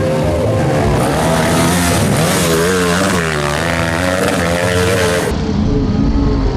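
Dirt bike engine revving hard, its pitch rising and falling over and over as the throttle is worked. The sound changes abruptly near the end.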